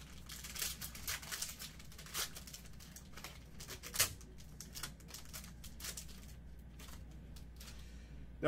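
Foil wrapper of a trading-card pack crinkling and tearing as it is pulled open by hand, with a sharp snap about four seconds in. The rustling then dies down to light handling.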